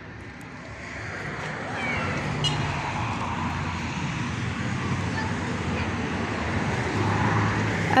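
Road traffic on a city street: cars passing, with engine and tyre noise that swells after about a second and holds steady, growing slightly louder near the end as a car goes by.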